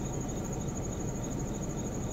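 Insects trilling: a steady, high-pitched, finely pulsing trill with a low steady rumble underneath.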